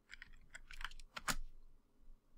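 Computer keyboard typing: a quick run of light key clicks over the first second and a half, as code is run in a script editor.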